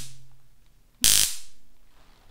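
Flashlight stun gun (rated 10,000 volts) fired in the air, giving a short burst of electric arcing about a second in, about a quarter second long. The end of a previous burst sounds right at the start.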